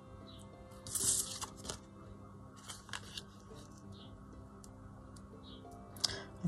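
Paper tags being slid and shuffled across a cutting mat, with short papery rustles about a second in and again near three seconds. Faint background music plays under them.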